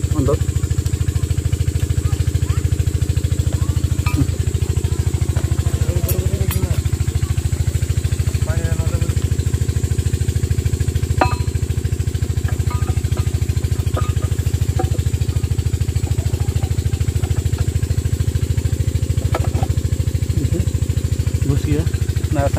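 An engine running steadily with a low, even throb that does not change, with a few faint clicks and clinks of metal parts being handled over it.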